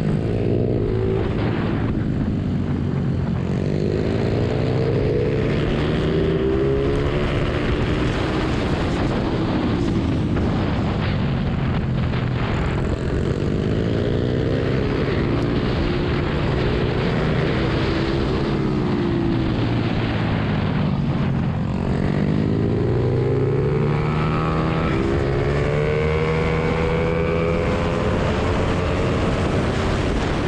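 Ohvale 110M mini GP bike engine recorded onboard, revving up under acceleration and falling off again into corners several times, with the longest climb near the end. Wind rush runs underneath.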